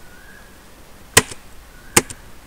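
Two sharp clicks of computer keys being pressed, about a second in and again near the end, as the cursor is moved on to the end of an item list.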